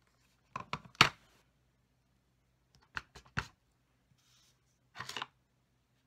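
Cardstock and craft tools being handled on a craft mat: a few light taps and clacks, the sharpest about a second in, two more about halfway, and a short papery rustle near the end.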